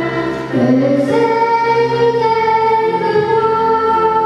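A child singing a song into a microphone, holding long notes, with an upward slide into a note about half a second in.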